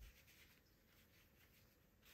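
Near silence: room tone, with a few faint rustles of knitted yarn being pulled tight by hand.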